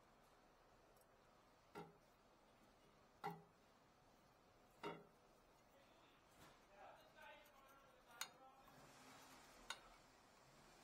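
Faint, sharp metallic clicks and taps, about five spread through, as a steel screwdriver and a brake caliper bracket with its hardware clips are handled and set down on a steel lift arm.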